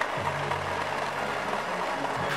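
The motor of a battery-powered Thomas TrackMaster toy engine running along plastic track, under background music.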